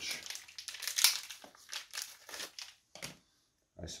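Handling noise from hands fetching a second metal speaker stud out of a trouser pocket: a run of short rustles and light clicks, loudest about a second in, then quiet for the last second.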